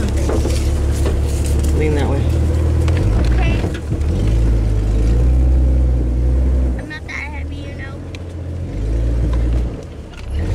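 Vehicle engine running at low revs as it crawls along an overgrown trail: a deep, steady drone whose pitch steps up and down a few times and drops back for a couple of seconds about seven seconds in.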